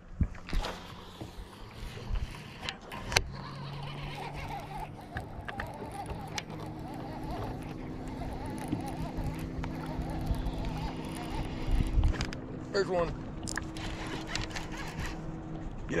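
Low, steady electric hum of a bow-mounted trolling motor pushing a bass boat, its pitch stepping up about six seconds in, with a few sharp clicks from a cast and the baitcasting reel early on.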